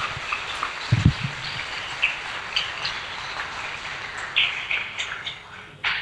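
Audience applause dying away, thinning to scattered claps, with a low thump about a second in.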